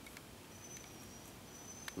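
Faint background hiss with a thin, high, steady tone that comes and goes twice, and a single sharp click near the end.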